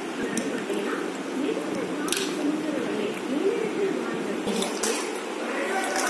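Indistinct voices talking in the background throughout, with a few light clicks and taps about two seconds in and again near the end.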